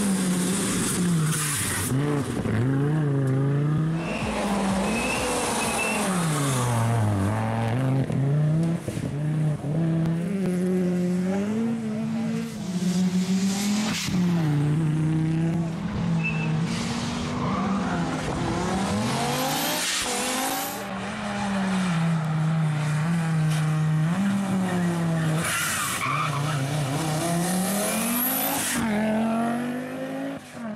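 Rally car engine at racing speed, its revs rising and falling again and again as it accelerates, shifts gear and slows for corners.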